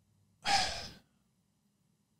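A man's single audible breath into a close microphone, sigh-like, starting about half a second in and fading out within about half a second.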